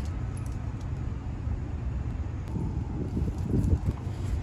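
Outdoor city background on a rooftop: a steady low rumble of distant traffic and air, with no distinct event.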